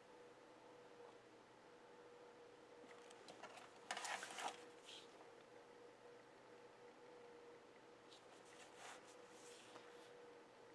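Near silence with a faint steady hum; about four seconds in, a brief rustling scrape as the sketchbook is turned on the table, and fainter scratches of a felt-tip pen on paper near the end.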